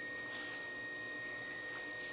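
Electric potter's wheel running, a steady high-pitched whine over a faint hum, as wet clay spins under the potter's hands during centering.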